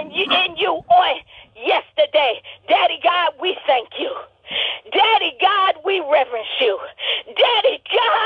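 A person's voice speaking without pause, heard over a telephone line so that it sounds thin and narrow.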